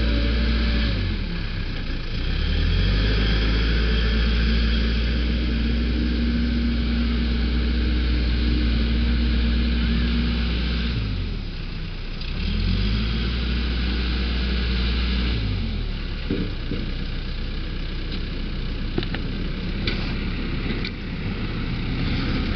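Backhoe loader's diesel engine revving up and down as it works: held at a high, steady pitch for much of the first half, dropping off about eleven seconds in, revving up again, then easing back toward idle for the last several seconds. A few light knocks near the end.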